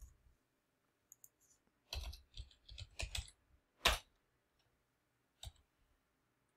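Computer keyboard keystrokes typing a short line: a quick run of key clicks about two seconds in, then a louder single key press a little before four seconds and another near the end.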